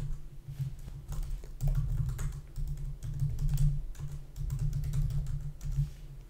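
Typing on a computer keyboard: runs of keystrokes in irregular bursts with short pauses between them.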